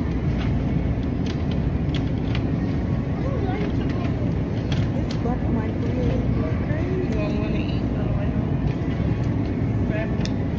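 Big-box store ambience: a steady low rumble with faint, indistinct voices of other people and a few small clicks.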